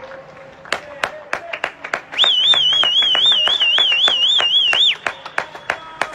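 Scattered hand-clapping from several people on surrounding balconies, after the singing. From about two seconds in, a loud, high warbling whistle sounds for nearly three seconds over the claps, then stops.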